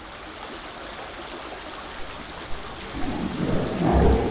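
Forest ambience: a steady hiss with a thin, high insect trill that stops about three and a half seconds in. Near the end, louder low, rough sounds come in.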